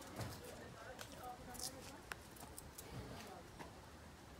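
Faint, distant voices talking, with a few light clicks and taps, one sharper click about two seconds in.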